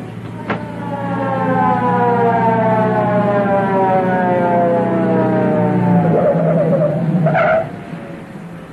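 Police car siren winding down in one long falling wail over the steady hum of the car's engine, ending with a brief squeal near the end as the car pulls up.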